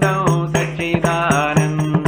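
A man singing a devotional chant and playing a hand-held frame drum, about four strokes a second, over a steady drone.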